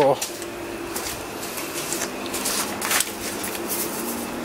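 Sheets of paper rustling and being handled, with a few short knocks, over a steady low hum from the big Océ photocopier, which is running while it warms up.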